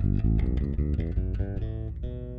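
Electric bass guitar playing a quick run of single plucked notes through the D major scale, about nine notes in under two seconds, landing on a held note near the end.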